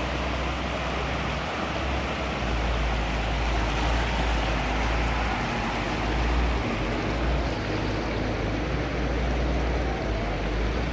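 Muddy floodwater rushing across a road: a steady, even rushing noise with a deep rumble underneath.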